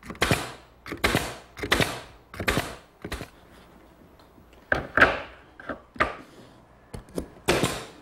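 A pneumatic brad nailer firing brads into redwood cleats: a series of sharp shots at irregular intervals, with a pause in the middle, mixed with wooden knocks from the frame and pieces being handled.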